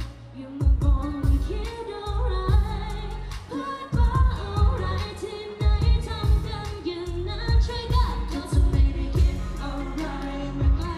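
Live pop song over the venue's sound system: singers' vocals over a backing track with a heavy bass beat, about two beats a second.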